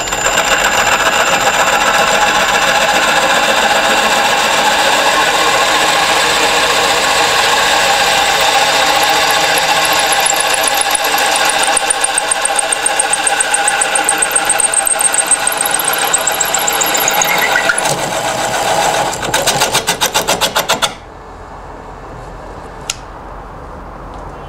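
Drill press running at slow speed with a large-diameter hole saw boring into the end grain of a round wooden stick: a loud, steady cut with a high ring. Near the end the cut turns to a regular pulsing, then at about 21 seconds the saw comes clear and only the quieter hum of the running drill press remains.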